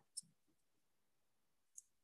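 Near silence with two faint clicks, one about 0.2 seconds in and one near the end, about a second and a half apart.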